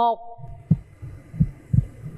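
Suspense heartbeat sound effect: short, low thumps at a steady, slow pulse, some in lub-dub pairs.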